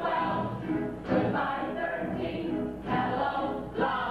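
A stage ensemble of voices singing a show tune together.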